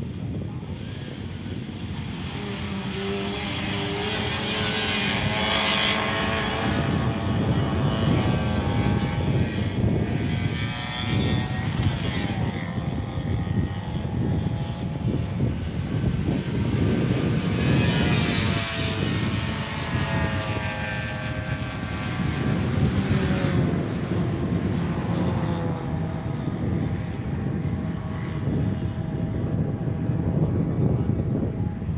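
A pack of Austin Mini race cars accelerating hard together, several engine notes overlapping. Each one revs up, drops back as it changes gear, and climbs again.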